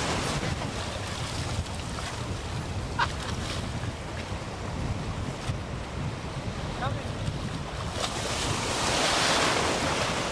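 Ocean surf washing in the shallows, with wind rumbling on the microphone; the wash swells louder near the end as a wave comes through.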